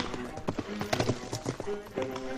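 Irregular knocks, heard as horse hooves clopping, over background music with sustained notes.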